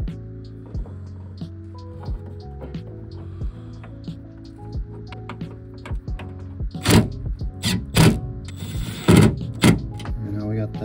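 Cordless impact driver in short bursts, running the side mirror's 10 mm mounting nuts down onto the door studs: five loud bursts in the last three seconds, the longest about half a second. Background music plays throughout.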